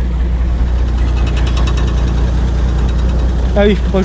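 International Harvester tractor engine idling steadily while it warms up.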